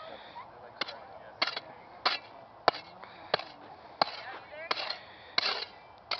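A short-handled digging tool chopping into hard dirt: about eight sharp strikes, evenly spaced roughly two-thirds of a second apart, as a hole is dug out.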